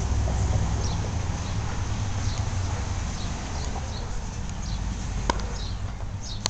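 Outdoor ambience: a low rumble on the microphone, with short high bird chirps recurring every second or so and a single sharp click about five seconds in.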